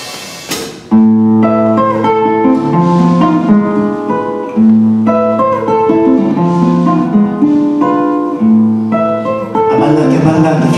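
Nylon-string classical guitar played solo: after a short noisy burst at the start, a rhythmic folk tune of plucked melody notes over repeated bass notes comes in about a second in and carries on.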